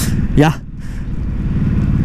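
Ducati Hypermotard 950's L-twin engine running on the move, with wind noise on the microphone. The sound grows steadily louder over the last second or so.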